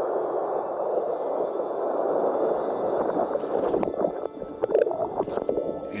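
Rushing river rapids heard from a camera riding the current at water level, a muffled, gurgling rush of whitewater. In the second half come irregular splashes and knocks.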